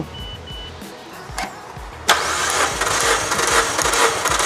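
Mazda 2 DOHC 16-valve four-cylinder engine cranked over on its starter for a compression test, beginning about two seconds in with an even, repeating cranking beat.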